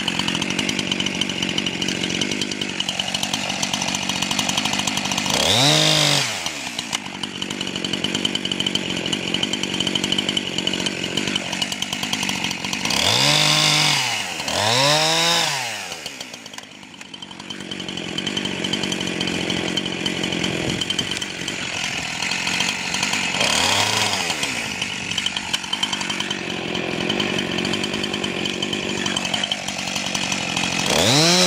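Husqvarna 346XP two-stroke chainsaw cutting into a seasoned birch log, running steadily under load. Its engine pitch swells up and falls back several times, and there is a brief drop in loudness about two-thirds of the way through.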